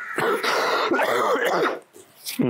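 A person's breathy, rasping voice, running almost two seconds.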